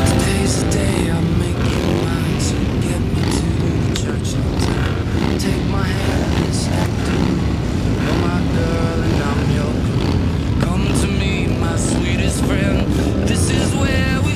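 Several cruiser motorcycle engines running together in a steady low rumble as a line of bikes and a trike get under way, mixed with people's voices and background music.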